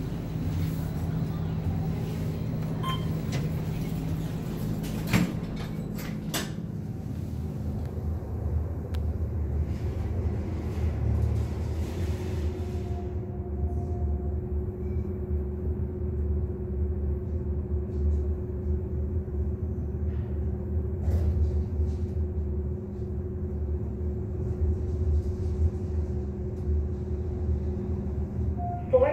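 Otis traction elevator: a couple of knocks about five and six seconds in, then the car travelling upward with a steady low rumble and a steady hum.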